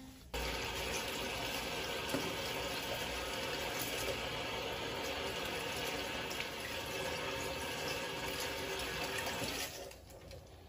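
Kitchen tap water running steadily, starting just after the beginning and cutting off near the end.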